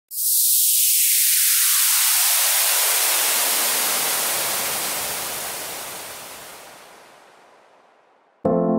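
Synthesized white-noise sweep (a downlifter) opening an electronic track. The hiss starts bright and high, then sinks lower while fading away over about eight seconds.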